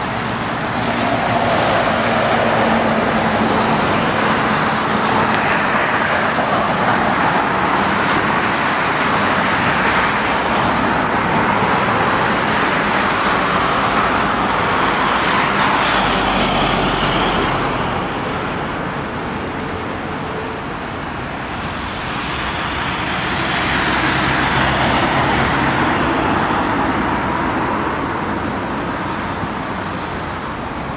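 Steady road traffic on a wide multi-lane city road, cars and trucks driving past, the noise swelling and easing as vehicles come and go. A box truck passes close about halfway through with a low rumble.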